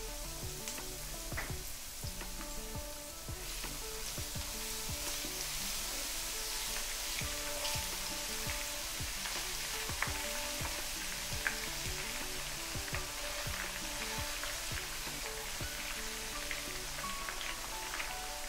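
Hot oil sizzling and crackling in a frying pan as a tempering of mustard seeds, dried red chillies and a freshly added grated ingredient fries vigorously, with steady hiss and a constant scatter of small pops. The sizzle grows a little brighter a few seconds in.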